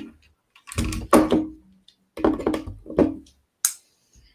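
Loose plastic LEGO pieces clattering as a hand rummages through them in a plastic sorting tray, in two short bursts, with a sharp click near the end.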